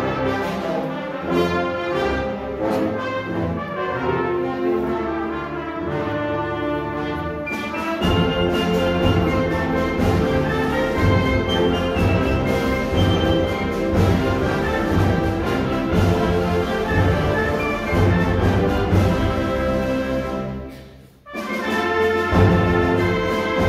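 Concert band of winds, brass and percussion playing, brass to the fore. About eight seconds in, the low brass and percussion come in and the sound grows fuller and louder; near the end the band stops for a moment, then plays on.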